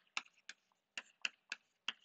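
Chalk tapping on a blackboard as words are written: a quick, irregular run of sharp clicks, about three a second.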